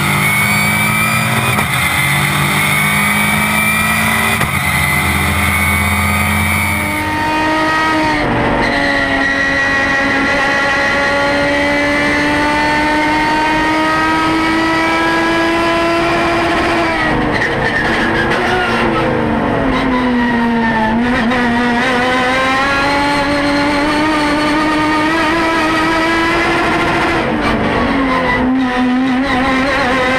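Race car engine heard onboard at full song through a lap, its note climbing slowly under acceleration. It drops away twice, about halfway through and near the end, as the car brakes and slows for corners. For the first several seconds a different, steadier sound comes before the engine note.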